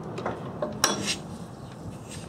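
A few metallic clicks and clinks from hands working the fittings of a stopped Fairbanks Morse Z 6 hp stationary engine, the loudest a sharp clink a little under a second in, followed by another.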